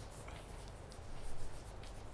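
Chalk writing on a blackboard: a run of short scratches and taps as the letters are formed, a little louder for a moment just past the middle.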